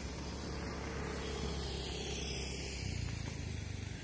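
A steady low engine rumble, like a motor vehicle running nearby, swelling slightly near the end.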